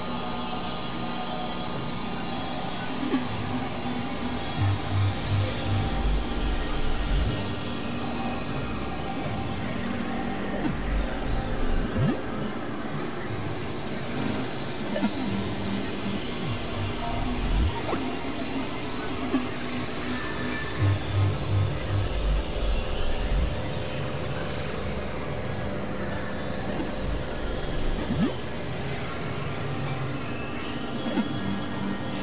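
Experimental electronic drone music: layered, sustained synthesizer tones over a wash of noise. Several times a short run of low, throbbing pulses rises out of it, with the odd pitch glide.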